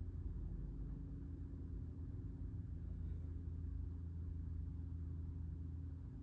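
A low, steady hum with no sudden sounds.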